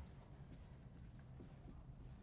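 Faint strokes of a dry-erase marker writing letters on a whiteboard.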